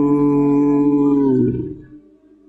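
A man's singing voice holding one long worship note at the end of a phrase, then fading out about a second and a half in.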